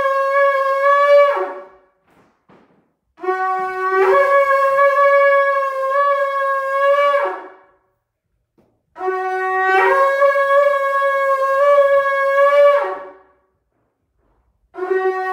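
Shofar blown in long blasts: the tail of one, then two more of about four seconds each. Each blast opens on a low note, jumps up to a higher note held steady, and drops back as it ends.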